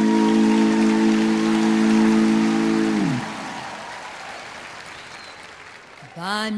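A band's closing held note, led by electric guitar, sounding under audience applause. The note bends down and stops about halfway through, and the applause then dies away.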